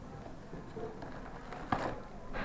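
Handling noise as a cardboard Happy Meal box is opened and a toy in a clear plastic bag is pulled out, with one sharp plastic crinkle near the end.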